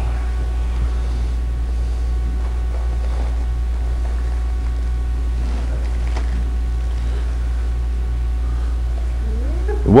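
A steady low hum throughout, with faint, distant murmurs of voices now and then.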